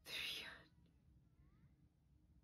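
A short breathy whisper from a woman, about half a second long right at the start, then near quiet.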